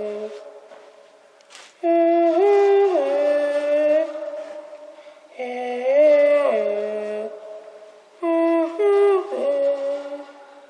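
A girl's voice sung into a homemade spring echo microphone: three short tunes of a few held, stepping notes, each dying away in a long echoing tail.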